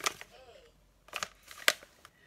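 A few sharp crackles and snaps as a printed bag is handled and opened, the loudest near the end. A brief, faint murmur of voice comes early on.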